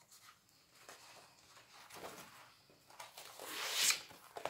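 Pages of a spiral-bound paper colouring book being turned and handled, with soft rustles and light taps. Near the end comes a longer, louder sliding rustle as the book is moved across the wooden table.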